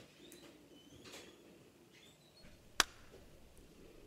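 Faint background noise with a few soft high chirps, and one sharp click close to three seconds in.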